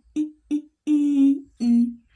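A person's voice humming four short syllables at a steady pitch, the third the longest, with short gaps between them.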